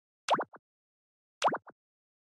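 Two identical short cartoon-style blip sound effects about a second apart, each a quick swooping chirp followed by a smaller one, over silence.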